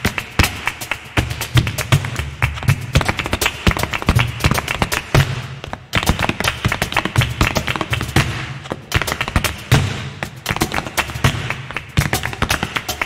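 Flamenco zapateado: rapid, dense heel-and-toe stamping of nailed flamenco shoes on a stage floor, with a cajón beating a low pulse underneath. The footwork breaks off for an instant just before the middle, then picks up again.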